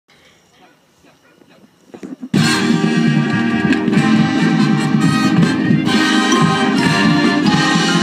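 High school marching band of brass and saxophones bursting into a Motown tune, loud and sudden about two seconds in, after a faint, near-quiet start.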